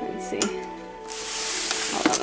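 Background music playing, with a loud rustling hiss in the second half: plastic wrap crinkling as the waffle maker is handled.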